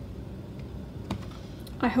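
A few light clicks of tarot cards being handled and moved over a tabletop, with a woman's voice starting near the end.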